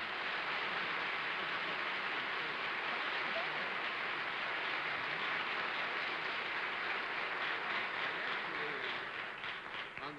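Studio audience applauding steadily, the applause thinning out near the end.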